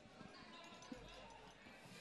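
Near silence, with a couple of faint soft knocks.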